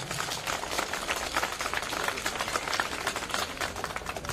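A crowd applauding: many hands clapping in a steady, dense patter.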